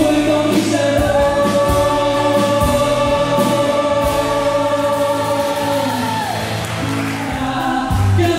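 Live band music: a male and a female singer sing together over drums and acoustic guitar, holding one long note from about a second in until about six seconds, where it falls away.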